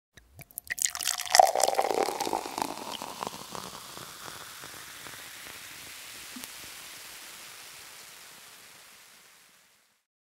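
Sparkling wine poured into a glass: a few clicks, then a loud burst of fizzing and crackling bubbles about a second in that slowly dies away over the next several seconds.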